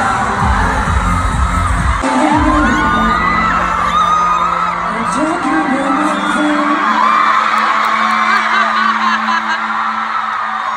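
Live stadium concert: a pop song's heavy bass stops about two seconds in, leaving a long held synth tone under a large crowd of fans screaming and cheering.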